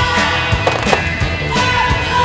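Skis clacking onto and scraping along a metal handrail, with sharp knocks about half a second and one second in, over a rock song.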